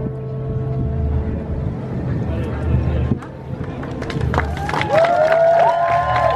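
Crowd clapping and whooping break out about two-thirds of the way through, over a low pulsing beat of background music.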